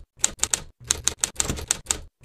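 Typewriter sound effect: a quick, uneven run of key clacks, about ten in two seconds.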